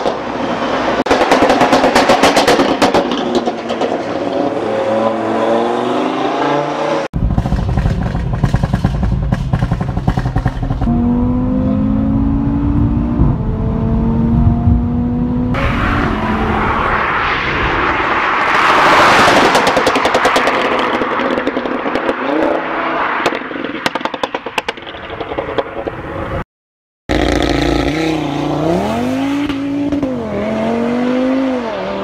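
Stage 2 remapped Audi RS3's turbocharged five-cylinder engine through a sports exhaust. For the first several seconds there is a rapid run of crackles and pops from the pop-and-bang map, then the engine revs up through the gears. A loud drive-by comes past about two-thirds of the way in, and the engine accelerates again near the end.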